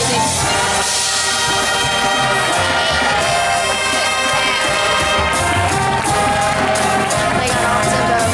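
High school marching band playing, its brass section of trumpets and trombones sounding full, sustained chords.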